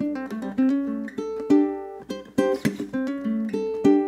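Ukulele fingerpicked in a bluesy riff: a quick run of plucked single notes and short chords, broken by sharp percussive string slaps.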